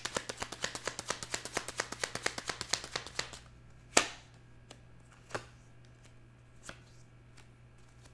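A deck of tarot cards being hand-shuffled: rapid card-on-card clicks, about nine a second, for roughly three and a half seconds. Then one sharp card snap as a card is pulled from the deck, followed by a few faint card taps.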